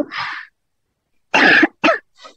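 A person coughing twice in quick succession, about a second and a half in, after a breathy sound at the start.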